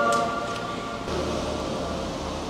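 Background music tailing off in the first moments, leaving a low steady hum with a faint click or two.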